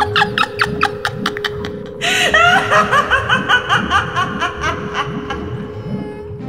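A woman's acted villain laughter: a quick chuckle, then about two seconds in a louder, higher-pitched cackle that runs for about three seconds, over background music holding one steady note.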